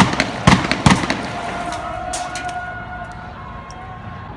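A rapid volley of loud, sharp bangs of weapons fire in the first second, followed by a few fainter, more distant reports, while a steady tone, like a siren, hangs over the street noise.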